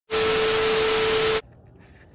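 TV static sound effect: a loud hiss with a steady tone running through it, cutting off suddenly after about a second and a half.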